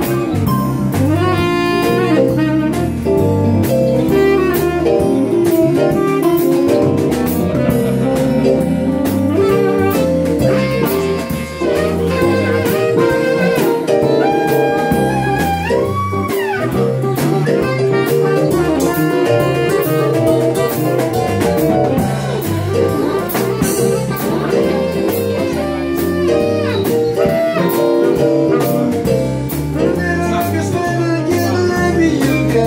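Live blues band playing: a saxophone carries melody lines over electric guitar, bass guitar and a drum kit.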